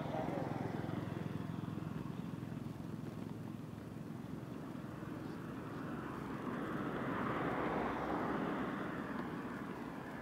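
Road traffic: a vehicle passing on the road, its engine and tyre noise swelling to a peak about seven or eight seconds in, then fading.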